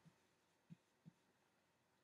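Near silence, broken by three faint, brief soft taps.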